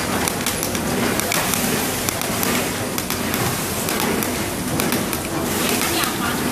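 Battery packing machine, a film-fed flow wrapper, running steadily with a dense clatter of irregular clicks and clacks as batteries are fed along its conveyor.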